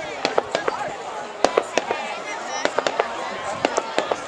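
Fireworks going off: a string of sharp, irregular bangs and cracks, the loudest about one and a half seconds in, with people's voices underneath.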